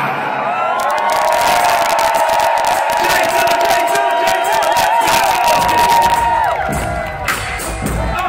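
Live hip-hop concert music through a stadium PA with a crowd cheering and whooping. The bass drops out while a held, wavering melodic line plays for several seconds, and the bass comes back in near the end.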